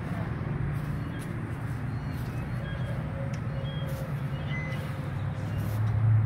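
Rear-mounted diesel engine of a 1966 Flxible bus idling with a steady low hum, louder near the end as the open engine compartment is reached.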